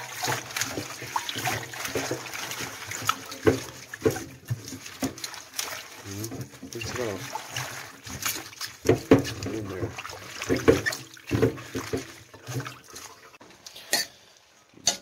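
Tap water running into a glass bowl in a stainless steel sink while a hand swishes dino kale leaves through the water, with splashes and irregular sharp clicks.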